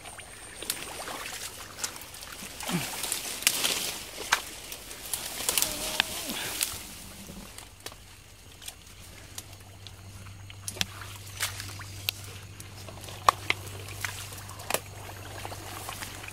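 Shallow muddy water sloshing and trickling as hands work through it, with frequent sharp crackles of grass stems and twigs being pushed aside. The busiest stretch comes in the first half.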